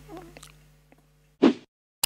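A single short sound effect, about a quarter second long, about a second and a half in, over otherwise dead silence on the subscribe end screen. Before it, faint room tone trails away.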